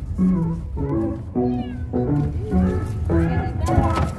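A domestic cat meowing several times, drawn-out rising and falling meows, over a background music track.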